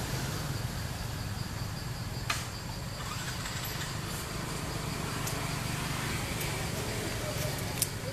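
Steady outdoor background hum, strongest low down, with a faint steady high tone over it. Two sharp clicks stand out, one about two seconds in and one near the end.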